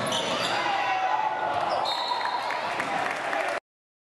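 Live basketball game sound in a gym: crowd voices and shouts ring through the hall, with a ball bouncing on the hardwood floor and a brief high squeak near the middle. The sound cuts off to dead silence about three and a half seconds in.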